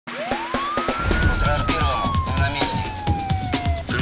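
Title-sequence music: a single siren-like wail rises for about a second, then slowly falls, over a heavy beat with sharp percussive hits.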